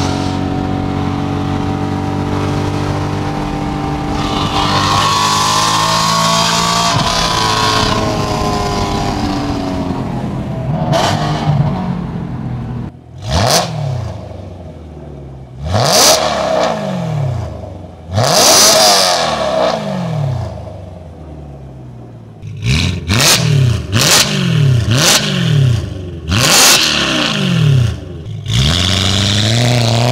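BMW E92 M3's S65 V8 through a straight-piped titanium exhaust with cat deletes and an X-pipe: first running steadily under way, rising in pitch as it accelerates, then from about 13 seconds in a string of sharp free revs, each a quick rise and fall, to about 3,000 rpm.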